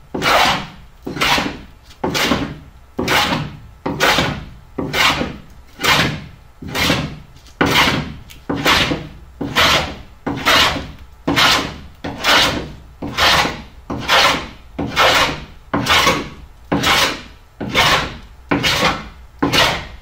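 Hand plane shaving the strip planking of a wooden boat hull, fairing it. The strokes come evenly, about once a second.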